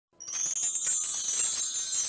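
Title-card intro music: high, glittering, bell-like tones that begin a moment in and hold steady.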